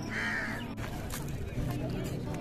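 A crow caws once in the first half second, a short harsh call; faint voices are heard near the end.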